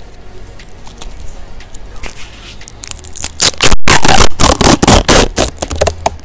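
Plastic SD-card packaging being crinkled and torn open by hand. Light scraping comes first, then a loud run of crackling from about three seconds in, broken by a very short gap partway through.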